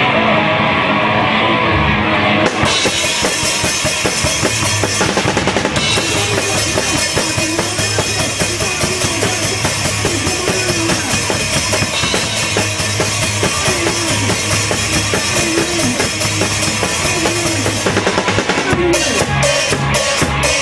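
Punk band playing loud and live: a full drum kit with bass drum and cymbals under electric guitar. The cymbals come crashing in about two seconds in, and near the end the drums break into separate, evenly spaced hits.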